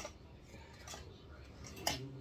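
A small metal utensil clicking against the rim of a metal cake pan, loosening the baked cake from the pan: a sharp click right at the start and another near the end, with fainter scrapes between.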